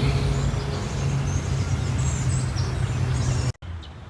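A steady low outdoor hum with birds chirping high above it, cut off abruptly near the end.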